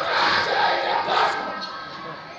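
A crowd of men shouting together in unison, loud at first and dying away over about a second and a half.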